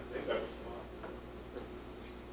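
Faint, indistinct talk from a few people in a large meeting room, over a low steady room hum.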